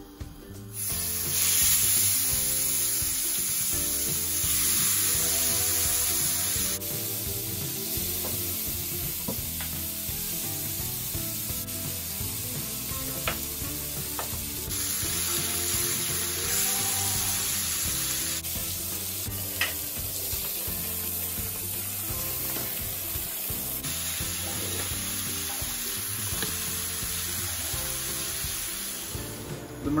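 Salmon fillets sizzling as they fry in a hot non-stick frying pan, a steady hiss that starts about a second in.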